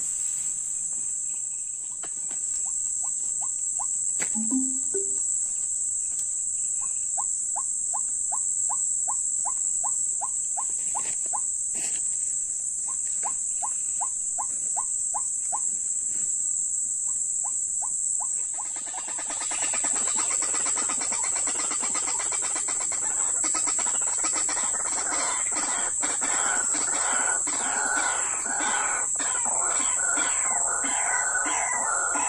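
A steady high insect chorus runs throughout, with a regular train of short clicking calls, about two or three a second, in the first half. About two-thirds of the way in, a loud, dense chorus of rapid, repeated calls starts and keeps going, which fits white-breasted waterhens calling as the birds come to the snare.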